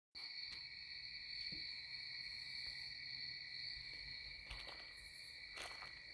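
Faint background tone: a steady high-pitched whine or trill, held without change, with a few soft clicks.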